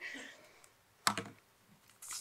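A brief cluster of laptop key clicks about a second in, a key pressed to advance a presentation slide.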